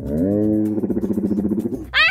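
A woman's drawn-out, wordless groan that rises in pitch at the start and trembles in its second half, voiced in dismay as a leaking tape balloon fails.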